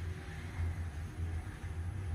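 Ride noise inside the cab of a 2020 OTIS Genesis MRL traction elevator travelling upward: a steady low rumble.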